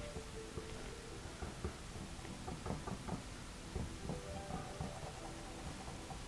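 Small bristle brush dabbing and stroking wet oil paint on a stretched canvas: a quiet run of soft, irregular taps.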